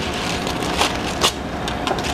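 Parchment paper rustling and crinkling as it is handled and pulled apart, with a few sharper crackles, over a steady background hum.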